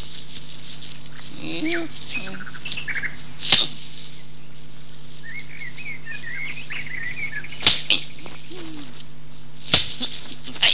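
Short chirping and squeaking animal calls in several bursts, with three sharp clicks, over the steady hiss and hum of an old film soundtrack.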